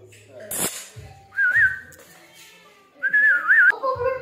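Two short high whistles about a second and a half apart, each held on one note and ending in a quick warble, with a sharp tap shortly before the first.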